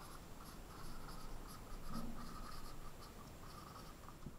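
Dry-erase marker writing on a small whiteboard: a faint run of short scratchy strokes as a word is written out, stopping shortly before the end.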